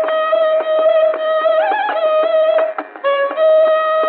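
Carnatic concert music from an old, narrow-band radio recording. A long held melodic note with a brief ornamental bend is set against regular mridangam and kanjira strokes. The sound dips briefly about three seconds in.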